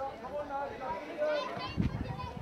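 Several indistinct voices calling out and shouting at a distance across a soccer pitch, overlapping one another with no clear words.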